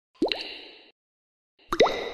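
Two water drops falling from a dripping tap, about one and a half seconds apart. Each is a sharp plop with a quickly rising pitch and a short ringing tail, and the second is the louder.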